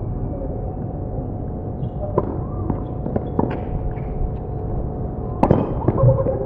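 Tennis rally: a tennis ball struck by rackets and bouncing on a hard court, heard as a handful of sharp pops about a second apart, the loudest near the end, over a steady background hum.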